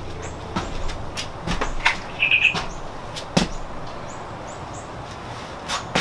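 A few light knocks and clicks, the loudest a little past three seconds in, over steady outdoor background noise, with a short bird chirp about two seconds in.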